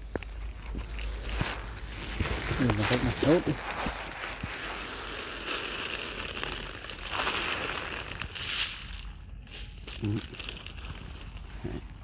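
Rustling of leaves and twigs brushing against the phone as it is carried through a jujube tree's low branches, with handling noise and a few sharp clicks. A man's voice is heard briefly about three seconds in.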